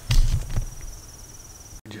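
A loud thump and rustle of the camera being handled, lasting about half a second, over a steady, pulsing, high insect trill that cuts off near the end.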